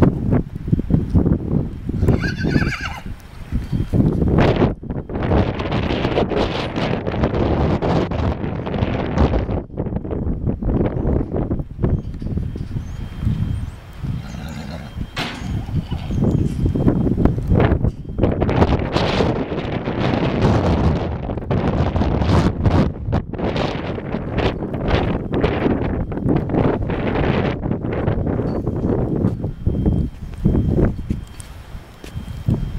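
A horse whinnies once, about two to three seconds in, with hoofbeats on soft dirt. A loud, gusty rumble of wind on the microphone fills the rest.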